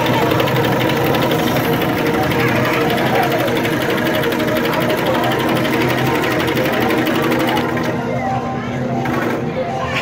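Arcade shooting game's sound effects: rapid-fire gunshots repeating many times a second over the game's music and effects, thinning out about eight seconds in.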